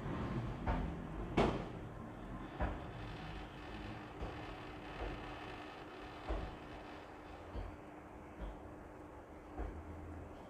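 Hands handling cloth and a tape measure on a cloth-covered table: a soft background haze with a scattering of light knocks and taps, the sharpest about a second and a half in, over a faint steady hum.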